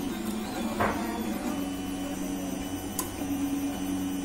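CoreXY 3D printer printing the first layer, its stepper motors humming as the print head traces a small outline; the hum holds a few steady low tones that shift in pitch as each move changes, with two short clicks.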